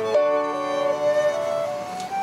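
Live chamber trio of flute, violin and keyboard playing a Baroque trio sonata movement: held notes, with the top voice stepping upward in small steps through the second half.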